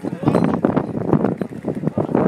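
A crowd of people talking at once close by, several voices overlapping in continuous chatter.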